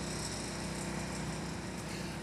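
Small boat's outboard motor running steadily, an even engine drone with no revving.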